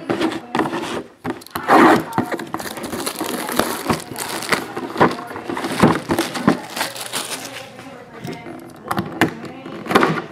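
Plastic shrink wrap being sliced and torn off a cardboard box, crinkling and crackling in quick irregular bursts, with talk in the background.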